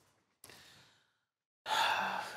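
A man sighs heavily near the end, a loud breath out just before he starts to answer. A soft single click comes about half a second in.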